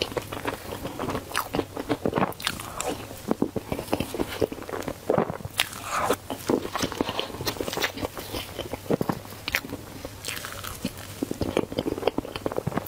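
Close-miked eating sounds of a woman taking spoonfuls of chocolate cake: biting and chewing with many sharp, irregular clicks and smacks.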